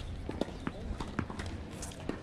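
A run of short, irregular knocks and taps from tennis play on a hard court, over a low rumble of wind on the microphone.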